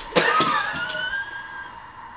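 A girl's long, high-pitched vocal sound that starts with a short burst of noise and then rises slightly in pitch, fading after about a second and a half.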